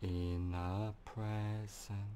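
Man's voice chanting a low, steady-pitched mantra tone, held for about a second, then twice more in shorter holds.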